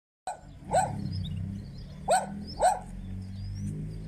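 A dog barking three times, short sharp barks about a second and a half and then half a second apart, over a low steady drone.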